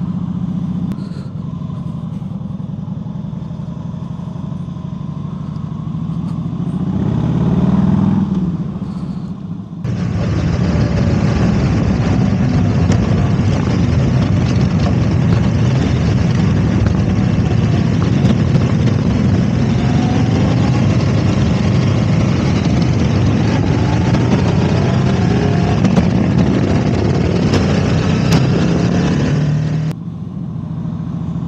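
Motorcycle engines on a slow group ride. For about ten seconds a 2001 Harley-Davidson Heritage Softail's V-twin with a Freedom Performance exhaust runs at low road speed, swelling as it revs around eight seconds in. Then the sound changes abruptly to a louder mix of motorcycle engine and wind rush, its pitch rising now and then as the engine revs.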